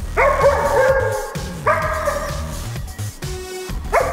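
A dog barking: two drawn-out barks, each about a second long, the first just after the start and the second about one and a half seconds in, with another starting at the very end. Background music plays underneath.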